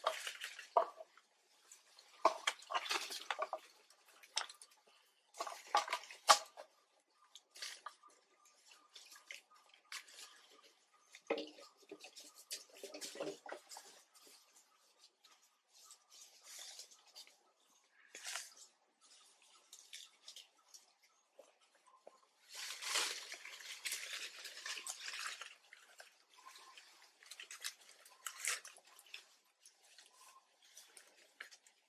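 Water splashing and dripping in a basin as macaques dip their hands in and step on its rim, in short irregular bursts with a denser stretch of splashing about two-thirds of the way through.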